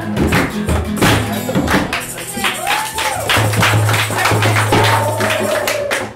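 Group music-making: djembe hand drums and strummed acoustic guitars keep a steady rhythm while voices sing along, with a few notes held in the second half.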